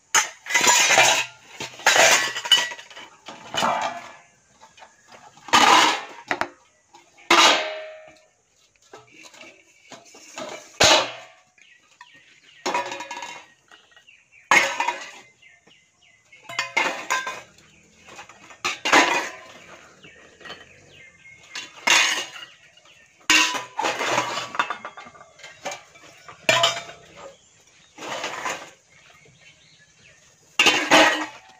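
Metal cooking pots, steel plates and utensils clattering and clinking as they are handled and packed into a bag, in separate bursts every second or two.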